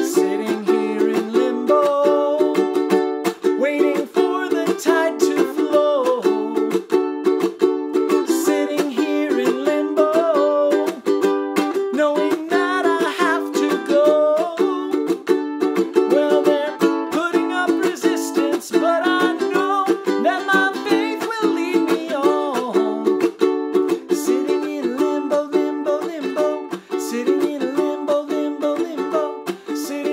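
A man singing a slow song while strumming chords on a ukulele, the strums coming in a steady, even rhythm.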